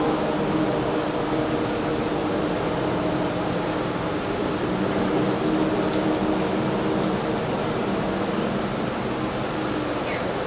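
Mixed choir singing a cappella, holding soft, slow sustained chords that change now and then, over a steady hiss of hall noise.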